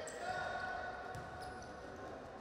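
Faint ambient sound of an indoor futsal match: the ball knocking on the wooden court, with faint players' voices in the large hall.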